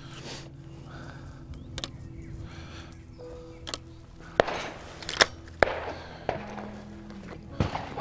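Soft background music with several sharp clicks and knocks from a break-action shotgun being handled: cartridges going into the chambers and the action closing.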